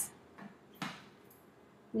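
A couple of soft, short knocks of plastic parts as the clear feed chute cover is handled and seated on top of a Breville BJE200XL juicer, the louder one just under a second in, over quiet room tone.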